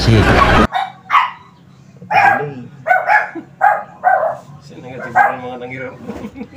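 Loud amplified voice from the karaoke speaker cuts off suddenly under a second in, leaving a faint hum. A dog then barks repeatedly, about eight short barks over the next five seconds.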